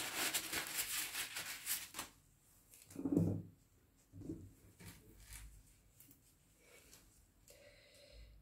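Handling noise at a painting table: a rapid clicking rattle for about two seconds, then a single soft knock about three seconds in, and a few faint small noises after.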